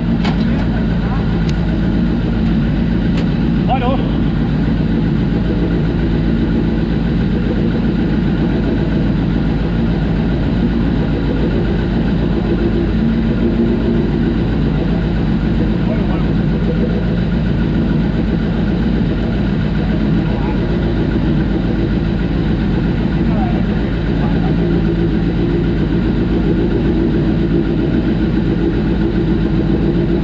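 Suzuki Hayabusa inline-four motorcycle engine in a hillclimb prototype idling steadily at close range, with an even, unchanging engine note. A few light clicks sound in the first few seconds.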